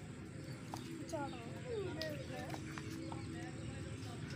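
Quiet, indistinct voices with a few light clicks.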